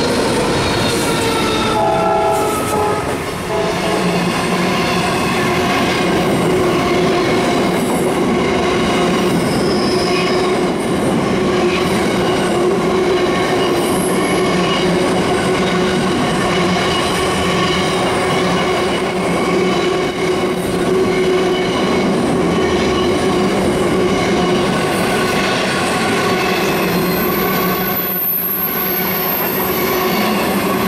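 Long freight train of empty steel wagons rolling past close by, a loud steady rumble with the wheels squealing in several held high tones. The diesel locomotives at its head go by in the first couple of seconds.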